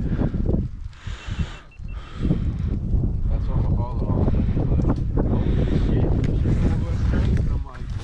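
Wind buffeting the microphone: a low rumble that comes and goes in the first two seconds, then holds steady until it drops away near the end.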